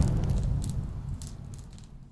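Closing sound of the video: a deep, booming low rumble fading away steadily, with a few faint crackles on top.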